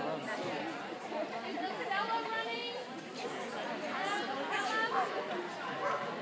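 Indistinct chatter of people's voices, overlapping and unclear, in a large indoor hall.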